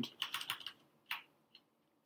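Typing on a computer keyboard: a quick run of keystrokes, with a last one about a second in.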